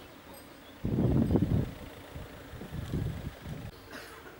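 Wind buffeting the microphone in two gusts of low rumble, the first starting suddenly about a second in and the louder, a weaker one near the end.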